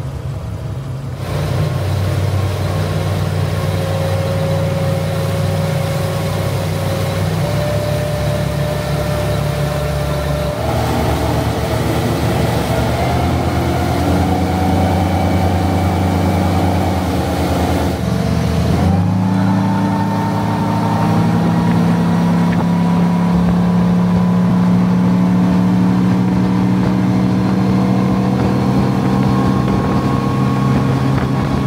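Honda BF350 5.0-litre V8 four-stroke outboard running at speed, with water rushing past the hull. The engine pitch steps up several times, the last with a quick rise about two-thirds of the way through.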